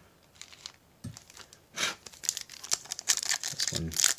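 A Topps Chrome Update pack's foil wrapper crinkling and tearing as it is opened by hand, starting about two seconds in.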